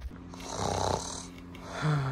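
A person making snoring sounds, twice: a breathy snore under a second in, then a lower, buzzing snore near the end.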